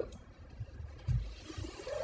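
A pause in speech: quiet room tone in a small room, with a faint low thump or rumble about a second in.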